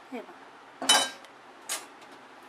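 Metal spoon scraping and knocking against a stainless steel plate as cooked gram-flour dough is scraped off onto it. There is a loud scrape with a brief metallic ring about a second in, and a shorter scrape near the end.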